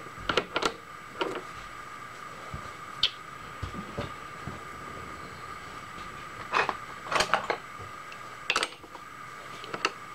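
Scattered metallic clinks and knocks of a tool holder being handled and set on a metal lathe's tool post while the spindle is stopped. The clinks come in small clusters, the loudest a bit after the middle, over a steady faint hum.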